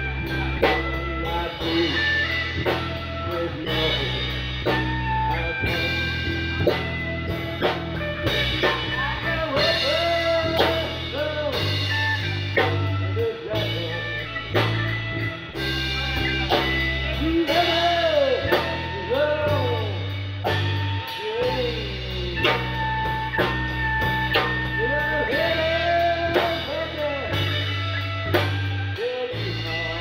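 Live blues trio playing: electric bass holding long low notes under a drum kit, with electric lead guitar bending notes through the middle of the passage.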